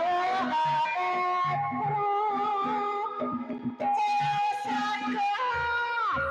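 Live Javanese music accompanying a kuda lumping (jathilan) horse dance: a melody of long held notes over repeated drum beats.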